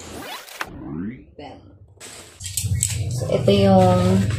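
A long cardboard box being handled, with rustling and scraping for about the first second and a half, then a few light knocks. A woman starts speaking near the end.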